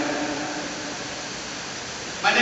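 A pause in the priest's amplified speech: the echo of his last words fades in the church, leaving a steady hiss of room noise.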